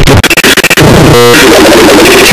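Extremely loud, distorted jumble of overlapping synthesized music and sound effects, clipping throughout, with a short buzzing tone just past the middle.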